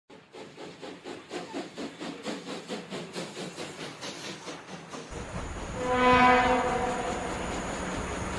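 A rhythmic clatter of about three beats a second, then an outdoor rumble and one short horn blast from an M62 diesel locomotive about six seconds in.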